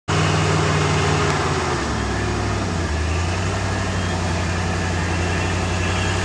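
Off-road 4x4's engine running at low revs as it crawls over a rutted trail, with the pitch dipping and then picking up again about two to three seconds in.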